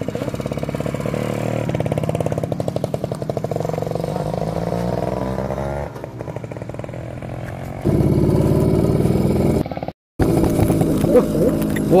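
Small underbone motorcycle engine running as the bike rides along, its pitch climbing a few seconds in. The sound changes level abruptly twice and drops out briefly about ten seconds in.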